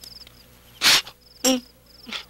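Crickets chirping in short, high, pulsed trills, three times. About a second in, a short loud breathy burst, then a brief vocal sound like a grunt.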